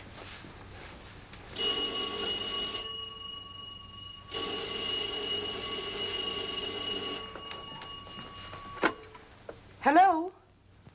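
Telephone bell ringing twice, a short ring and then a longer one that fades away: the operator ringing back to test a line thought to be out of order. A sharp click follows near the end.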